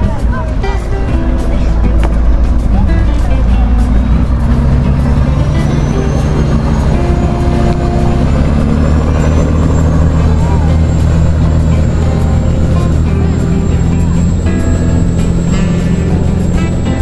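Motorboat engine running as the boat speeds away: a deep, steady drone, with a faint whine rising in pitch over a few seconds. Background music plays over it.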